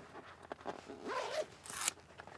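Rustling and a quick zip near the end, like a bag being unzipped as papers are got out. About a second in there is a brief wavering voice sound, like a sigh or a whimper.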